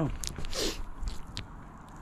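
Handling noise as a vinyl record in a plastic sleeve is pulled from a cardboard box: a click, a short crinkly rustle, then another click, fading to quieter handling.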